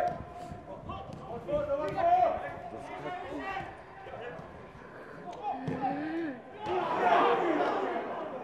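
Players' voices calling across a football pitch during play, with sharp knocks of the ball being kicked. A louder burst of several voices comes about seven seconds in.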